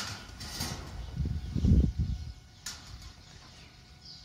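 Hands handling loose potting soil in a cut-open milk carton close to the microphone: low soft thumps and rustles, loudest about a second and a half in, with one sharp click near the three-second mark.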